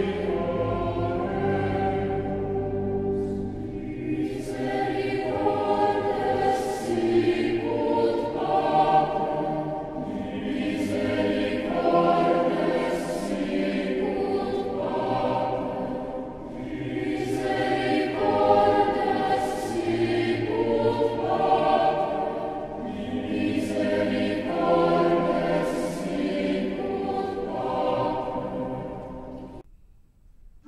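Background music of a choir singing, in sustained chords that change every second or two.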